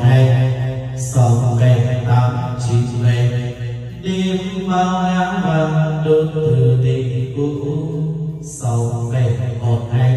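A man singing long held notes into a UGX38 Plus wireless microphone, heard through the sound system, as a test of the mic's sound.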